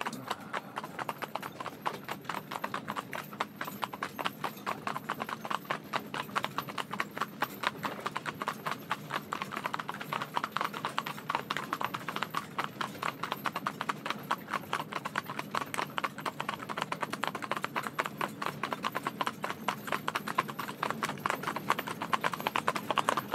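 Hooves of three Shetland ponies trotting together on a tarmac road: a rapid, steady run of overlapping clip-clop hoofbeats.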